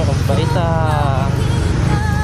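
A motorcycle engine running steadily at low revs, a constant low rumble, with a person's voice over it for about a second from half a second in.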